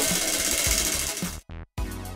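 Spinning prize wheel, its pointer flapper clicking rapidly against the pegs around the rim, with a brief gap about a second and a half in.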